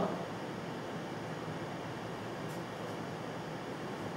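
Steady room tone in a small hall: an even hiss with a faint low hum, and a faint short rustle about two and a half seconds in.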